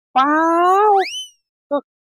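A man's drawn-out 'nothing' in Thai, followed about a second in by a quick rising whistle, a cartoon-style comedy sound effect.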